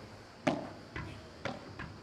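Padel ball bounced on the court before a serve: four short, sharp taps about half a second apart, the first the loudest.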